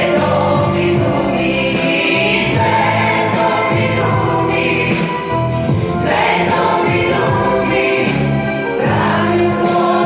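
Music with several voices singing together, loud and continuous.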